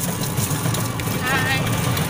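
Steady low rumble of a moving vehicle, heard from the passenger seat of an open, canopied ride, with a short bit of voice about halfway through.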